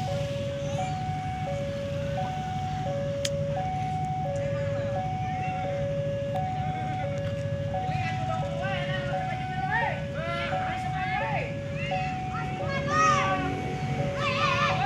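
Railway level-crossing warning alarm sounding a steady two-tone chime, a high and a low note alternating, each held for about two-thirds of a second, over a steady low engine hum.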